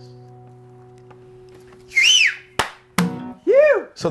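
The last chord of an acoustic guitar ringing out and slowly fading, then about two seconds in a short human whistle that rises and falls, two sharp slaps, and a brief vocal whoop that rises and falls.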